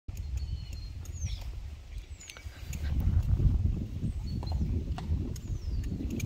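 Harnessed Friesian horses standing on brick paving, with now and then a hoof shifting and harness clinking, over a low, uneven rumble that grows louder about three seconds in. Short high chirps sound several times above it.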